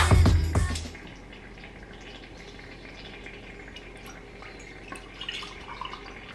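Background music cuts out about a second in, leaving quiet kitchen room tone with a few small clicks and a light trickle of liquid near the end.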